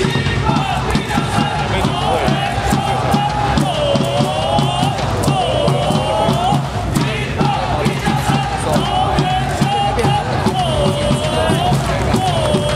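Ballpark cheer song over the stadium speakers, with a steady drum beat and a wavering melody line, and a crowd chanting along.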